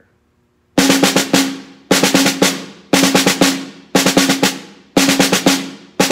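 Snare drum played with wooden sticks: a string of separate five-stroke rolls, two quick double bounces and a finishing tap, about once a second, each followed by the drum ringing briefly. The first starts just under a second in, and the last begins at the very end.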